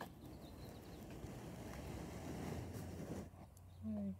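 Rustling handling noise from a smartphone being slowly turned by hand to pan the camera, fading out after about three seconds.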